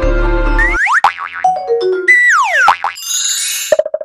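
Soft background music with held notes cuts off about a second in and gives way to a short cartoonish logo jingle: swooping pitch glides up and down with boing-like sounds, a few falling stepped notes, a bright sparkle, and a fast stuttering tone near the end.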